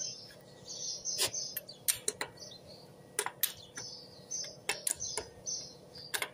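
Irregular sharp metallic clinks of a steel wrench working the lug nuts on a Toyota Hilux wheel, with birds chirping in the background.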